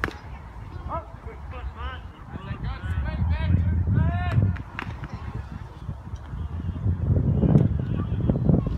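Geese honking in a string of short calls that rise and fall in pitch, from about one to four and a half seconds in, over a low wind rumble. A sharp pop at the very start, a pitched baseball smacking into the catcher's mitt.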